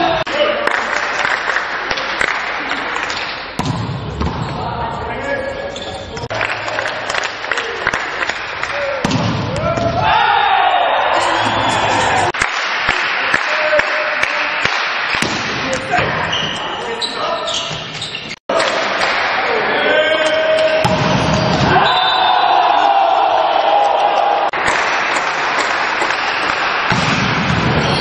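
Indoor volleyball rallies in a large hall: repeated sharp hits of the ball against hands and court amid shouting voices and crowd noise, with a sudden cut about two-thirds through.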